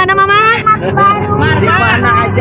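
Several voices of children and a woman calling out excitedly and overlapping, with some drawn-out vocalising, inside a moving car's cabin, over a steady low hum of engine and road.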